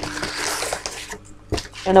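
Tissue paper rustling as the contents of an opened box are handled, for about a second, then a single click, over a faint steady hum.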